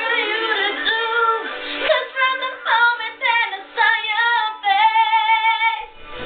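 Music with a female voice singing, mostly long held notes that bend up and down in pitch.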